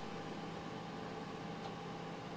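Desktop computer hard drive spinning, a steady low hum with faint even tones, heard with the case fans turned down to their quietest setting.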